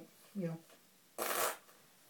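A short rustle of paper lasting about a third of a second, just past the middle: a softcover maths workbook being handled and put down.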